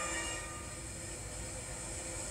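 A steady held tone of several pitches sounding together, from a film soundtrack played through a TV's speakers.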